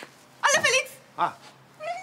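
A short, high-pitched, voice-like call, then a second shorter one a little over a second in.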